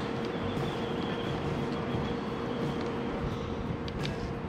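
A steady mechanical hum with one constant mid-pitched tone running under it.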